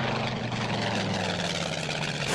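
A steady low engine-like hum under a wash of noise, starting suddenly with the cut to the ski race footage.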